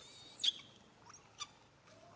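Young macaque giving high-pitched squealing cries, begging to nurse: one thin held squeal ending in a quick upward sweep about half a second in, then a couple of short squeaks.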